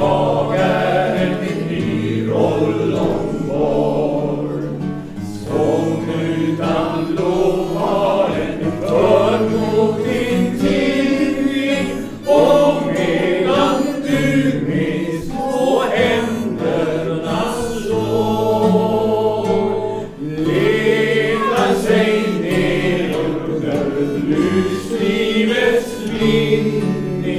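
A small group of mostly male voices singing a song together, accompanied by acoustic guitars.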